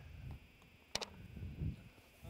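A golf putter striking the ball on a short tap-in putt: a single sharp click about a second in, followed by a faint low knock.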